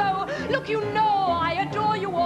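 A woman singing a fast show-tune patter song with a pit orchestra, her voice sliding up and down in pitch over steady low accompaniment with a regular pulse in the bass.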